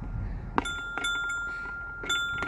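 Playground musical floor panel sounding a chime-like note when stepped on: a sharp strike about half a second in that rings on as one long steady tone, with a second strike about a second in.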